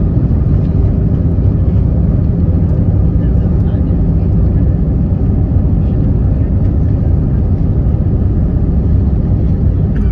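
Airbus A319 cabin noise during the landing roll: a loud, steady low rumble of the engines and the wheels on the runway, heard from a window seat beside the engine.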